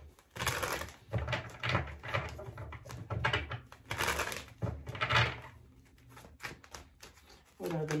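A deck of tarot cards shuffled by hand: a run of short papery rustling bursts, about five in the first five seconds, then a few faint taps of cards.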